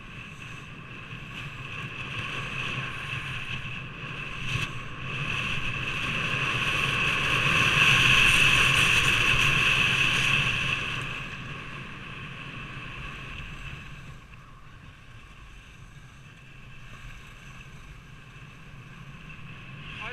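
Rushing wind on an action camera's microphone and skis scraping over hard-packed snow during a fast downhill run. It is a continuous hiss that swells louder through the middle and eases off again after about 11 seconds.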